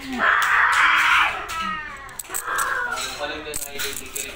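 Young child shrieking in play: one long shriek for about a second, then a falling squeal and shorter bits of children's voices.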